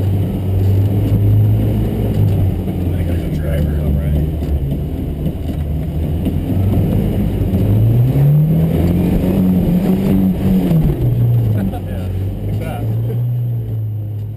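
Rock-crawling 4x4's engine pulling at low revs up a rock ledge. Its pitch rises smoothly about eight seconds in, holds for a couple of seconds, then eases back down as the truck tops out.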